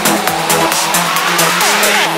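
Psytrance track at a build-up: the kick drum drops out and a rising synth sweep climbs over steady hi-hats and a held bass tone.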